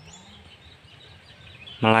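Faint, steady background noise in a pause between spoken sentences, with speech starting again near the end.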